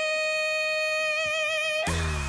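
A female pop singer holding one long high note, with almost no backing under it; near the end the beat and a deep bass come back in.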